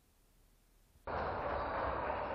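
Near silence, then about a second in a steady, noisy sound starts abruptly: the intro of the hip-hop backing beat, before the bass comes in.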